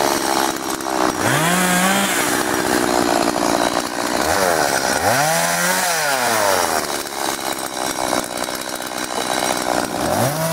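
Petrol chainsaw running at high revs, its engine pitch dropping and climbing back a couple of times as the throttle is released and reopened.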